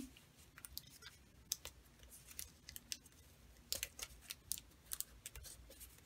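Faint crackles and ticks of clear adhesive tape and a kraft-paper envelope being handled, as a strip of tape is pressed down over twine.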